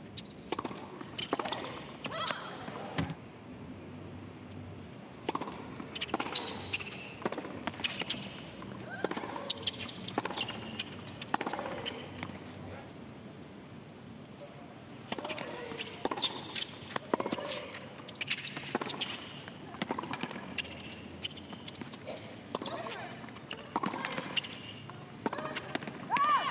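Tennis rallies on a hard court: racquet strikes on the ball and ball bounces, coming irregularly one after another, with a short lull about twelve to fifteen seconds in.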